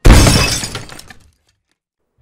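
A single loud bang on window glass, as of a fist pounding the pane. It hits suddenly and dies away over about a second.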